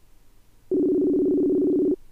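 Ringback tone of an outgoing Facebook Messenger video call still waiting to be answered: one steady, low-pitched two-note ring starting just under a second in and lasting about a second.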